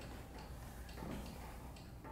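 Quiet room tone: a steady low hum with faint ticking.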